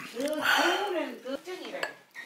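A metal spoon clinking and scraping against small ceramic dishes on a table, with a sharp clink near the end.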